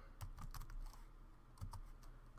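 Computer keyboard keystrokes: a run of about eight quick, quiet taps as a short command is typed and entered into a terminal.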